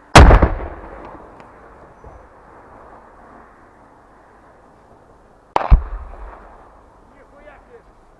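Two heavy anti-tank weapon shots, one at the very start and one about five and a half seconds later, each a sharp, loud blast that rolls off over about a second.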